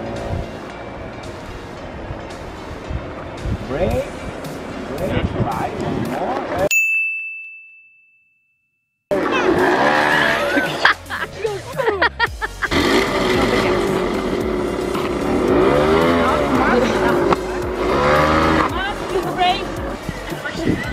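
Scooter engines revving up and down, mixed with voices. A short beep near seven seconds in fades into about two seconds of dead silence, then the revving and voices resume.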